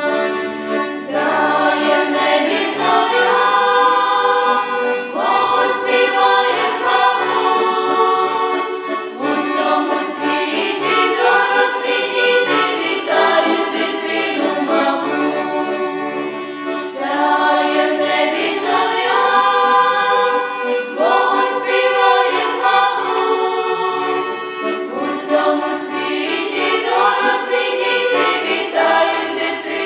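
A choir of mostly young women's voices singing a Ukrainian Christmas carol (koliadka) in sustained phrases, accompanied by a piano accordion.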